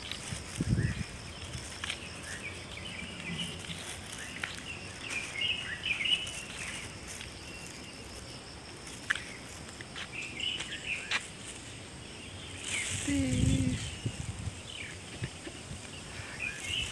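Small birds chirping in short scattered runs of calls over a steady high insect buzz, with a couple of low thumps about a second in and again near the end.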